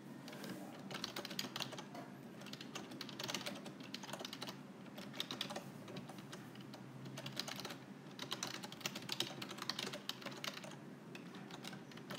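Typing on a keyboard: runs of quick key clicks with short pauses between words, as a sentence is typed out.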